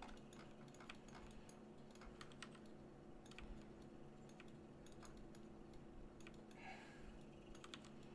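Faint, irregular clicks of computer keys being pressed, over a low steady hum.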